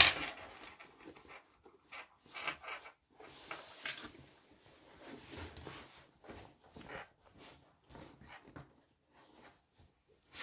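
Fabric rustling and brushing as a lined cloth-and-faux-leather bag is handled and its corners pushed out from the inside, in short scattered scuffs with a sharper rustle right at the start.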